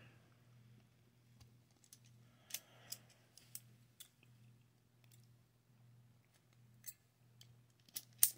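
Near silence, with a low steady hum and a handful of faint sharp clicks as locking pliers (vice grips) are released and handled on a small bent tension tool.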